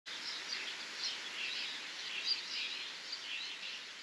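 Birds chirping: many short, scattered calls over a faint outdoor background hiss.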